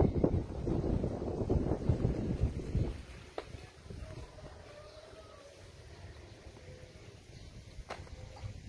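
Wind buffeting the microphone, a gusty low rumble for about the first three seconds that then drops away to a faint outdoor background.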